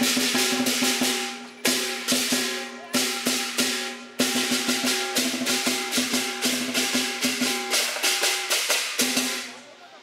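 Cantonese lion dance percussion: a big drum beaten in fast strokes with cymbals clashing and gongs ringing. The playing breaks off briefly three times, then stops near the end and rings away.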